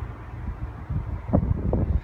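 Wind buffeting the camera microphone: a low, rough rumble that gusts louder in the second half.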